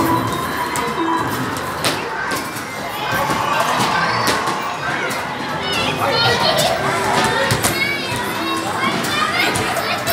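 Busy amusement arcade din: many children's voices and chatter over the sound of arcade machines, with scattered short knocks.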